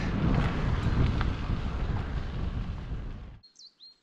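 Wind buffeting the microphone and the rumble of bicycle tyres on a gravel track while riding. It cuts off suddenly about three and a half seconds in, followed by a faint high chirp.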